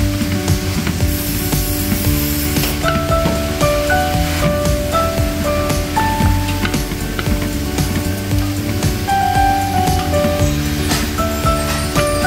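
Background music with a light melody of short notes, over the sizzle of onions and king oyster mushrooms frying in a large wok and the repeated scrape and clatter of wooden paddles stirring them.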